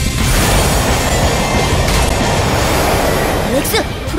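Cartoon action sound effect: a loud, steady rushing, grinding noise, with a rising whoosh near the end.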